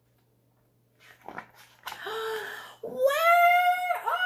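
A woman's voice making an exaggerated, playful angry roar: a few breathy huffs about a second in, then a long, high, held yell from about three seconds in that is still going at the end.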